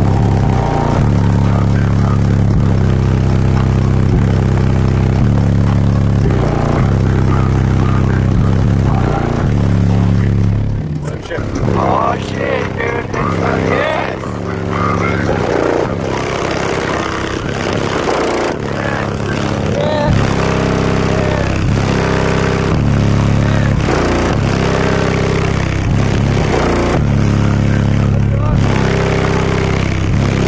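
Bass-heavy music played very loud through a car audio system of four 18-inch Sundown Audio HDC3 subwoofers, deep bass notes stepping from pitch to pitch. The deep bass drops back for several seconds about eleven seconds in, leaving vocals and higher parts, and comes back in full about twenty seconds in.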